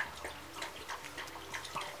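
A pet lapping up coffee from a cup: faint, irregular wet licking clicks.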